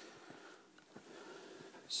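Faint handling noise over quiet room tone: soft rustles and a few small ticks as gloved hands handle the work, with a brief hiss near the end.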